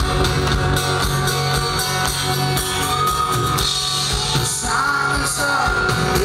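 Live rock band playing a song, recorded from the audience: a lead vocal with held sung notes over acoustic guitar, bass, drums and keyboard.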